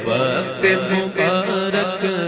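Naat recitation: a man's voice chanting a devotional melody in long, wavering notes over a steady low drone.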